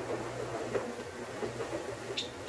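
A steady low machine hum with scattered light clicks and knocks.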